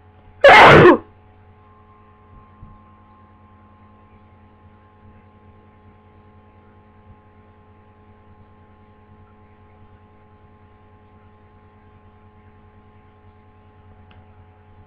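A single loud, short sneeze from a person with a head cold, about half a second in, over a steady low electrical hum.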